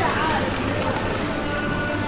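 Supermarket ambience: background music and indistinct voices, at a steady level with no single sound standing out.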